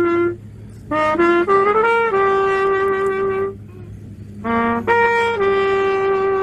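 Solo trumpet playing a slow melody in long held notes, breaking off twice briefly between phrases, over a faint steady low hum.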